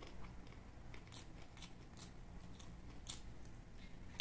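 Close-miked chewing of grilled chicken: soft, irregular wet mouth clicks and smacks, about one every half second, over a faint steady hum.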